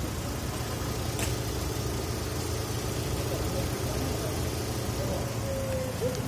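Fiat Strada pickup's four-cylinder engine idling steadily with the hood open.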